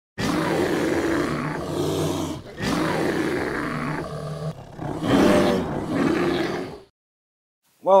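Animal roar sound effect: a run of long, low roars lasting nearly seven seconds, then cutting off.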